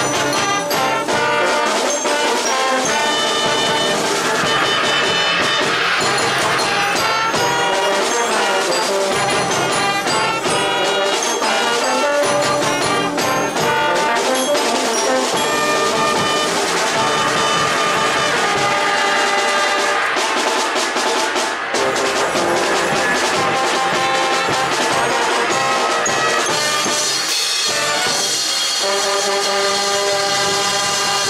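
Marching band's brass section (trumpets, trombones and tubas) playing a piece together, loud and continuous, with sustained chords and moving melodic lines.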